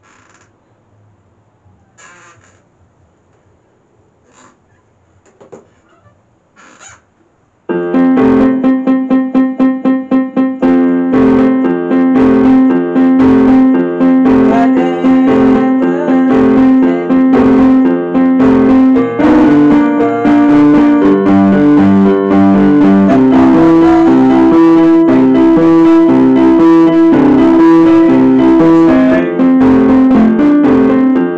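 Portable electronic keyboard on a piano voice, played loudly. After a few quiet seconds of small rustles and clicks, it starts suddenly about eight seconds in with a quickly repeated note, then goes on in full chords and melody.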